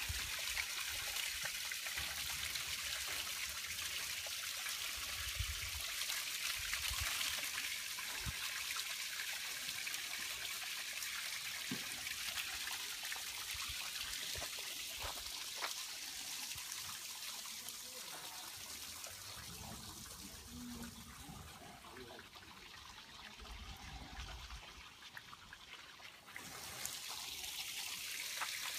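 Milk being dumped from a dairy bulk tank, pouring steadily into a slurry pit. The flow weakens about three-quarters of the way through, then surges back abruptly near the end.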